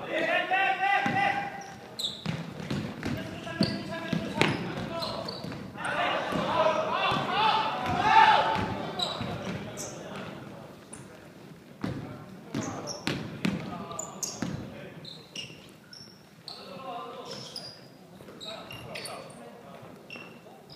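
Basketball bouncing on a hardwood gym floor during play, with repeated short knocks, and players' shouts echoing in a large hall. The voices are loudest near the start and again a third of the way in.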